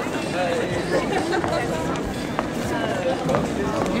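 Indistinct voices of several people talking over steady street noise.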